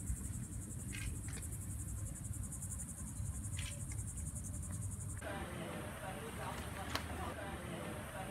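Insects trilling with a rapid, even, high-pitched pulsing over a low steady rumble; the trilling cuts off suddenly about five seconds in, after which faint voices take over.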